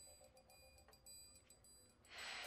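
Near silence: faint room tone with a few faint steady tones and a couple of soft ticks.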